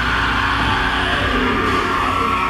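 Live rock band playing loud, with distorted electric guitars and bass holding a steady, droning chord.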